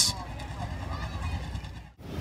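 Faint low rumble of a dirt-track Sportsman race car idling as it rolls slowly, fading out near the end.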